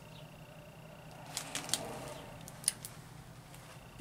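Faint road traffic passing outside, a soft rush of noise that swells and fades over a couple of seconds, with a few light clicks and crinkles from a plastic-covered canvas being handled.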